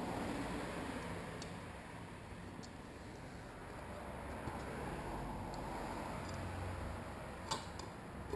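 Faint scratching and a few light ticks of a snap-off utility knife trimming the corners of window tint film laid on glass, over a steady background hum.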